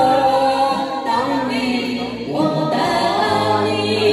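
A man and a woman singing a Chinese pop duet into handheld microphones over backing music, with long held notes.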